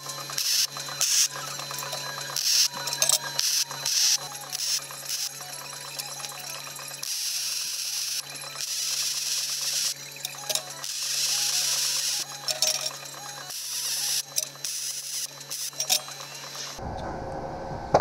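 MIG welder arc crackling and hissing on steel. It starts as short choppy bursts of tack welds, then runs in longer stretches of a second or two as beads are laid. It stops near the end.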